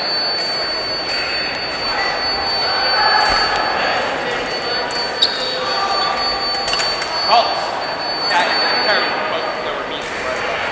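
Chatter of many voices echoing around a large gymnasium, with a steady high-pitched tone through most of it that fades near the end. A few sharp clinks stand out around the middle.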